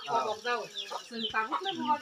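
Chickens clucking in repeated short, falling calls, alongside people talking.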